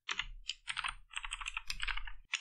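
Typing on a computer keyboard: a quick, uneven run of key presses, several a second, as code is typed into an editor.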